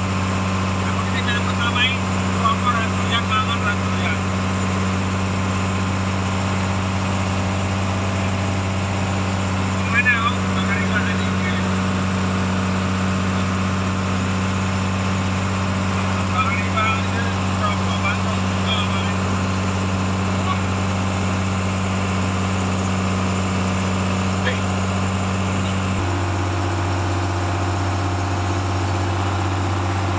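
Fishing boat's engine running at a steady speed, a constant low drone; its note changes about 26 seconds in.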